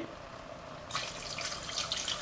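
Water pouring from a jug into a saucepan of food. The pour starts about a second in and keeps running.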